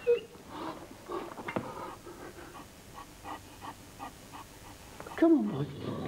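Harlequin Great Dane panting in quick short breaths, about three a second. Near the end a louder voiced sound with swooping pitch starts.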